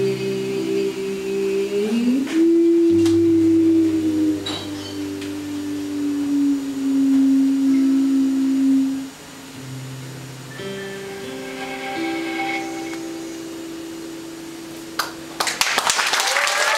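Live band holding the song's closing chords: sustained notes over a low bass note, one gliding up into a long held note, then a quieter final chord from about ten seconds in. Audience clapping begins near the end.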